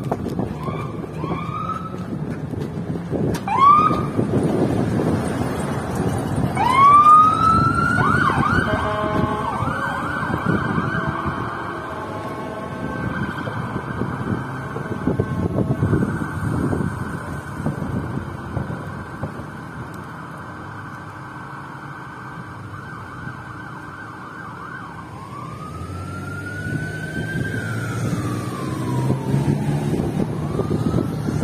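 Ambulance electronic siren on a responding 2014 Leader Type III ambulance. It gives a few short rising chirps, then a long rising whoop that breaks into a fast yelp, then holds a steady high tone for many seconds, then a slow rise and fall near the end. Traffic rumbles underneath.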